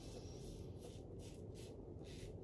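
Faint short scrapes of a 1930s Barbasol safety razor drawn across lathered stubble, a quick run of strokes about three a second.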